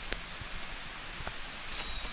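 Quiet outdoor ambience: a steady, even hiss with a few faint soft ticks, as of footsteps on a grassy path, and a short thin high tone near the end.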